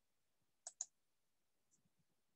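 Near silence broken by two quick, faint clicks close together a little over half a second in.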